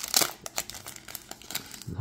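Foil wrapper of a trading-card pack crinkling as it is pulled open by hand. The crackle is loudest in the first half second and then goes on more softly.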